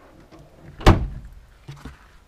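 A single sharp clunk about a second in, then two softer knocks near the end: handling of a motorhome's exterior side locker door and latch.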